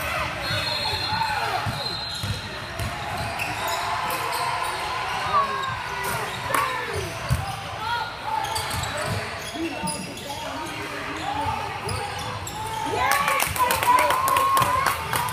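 Basketball game in a gym: the ball bouncing on the hardwood, short sneaker squeaks and players' and spectators' voices. Clapping starts near the end.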